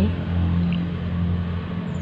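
A steady low motor hum, running evenly under a light wash of noise.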